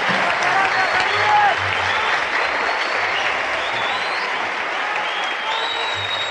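Concert audience applauding steadily at the end of an oud taqsim, with a few shouts and whistles rising over the clapping.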